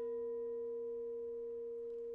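A single sustained note with an almost pure tone, ringing steadily and fading only slightly.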